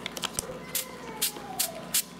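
Small fine-mist pump spray bottle squirting water onto a mushroom grow kit's substrate to keep it moist: a series of short hisses, about two a second.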